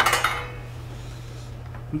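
A round metal pizza pan knocks once against a gas burner's grate and rings briefly, fading within about a second.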